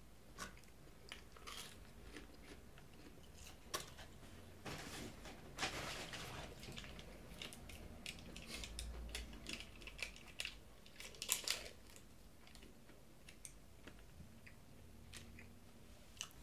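Quiet chewing with soft crunches from a mouthful of fried chicken sandwich, scattered with small clicks and rustles as a small plastic condiment packet is handled and torn open partway through.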